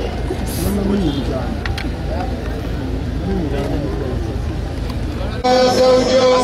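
Crowd of people murmuring and talking over a steady low rumble. Near the end a single loud, held voice cuts in above the crowd.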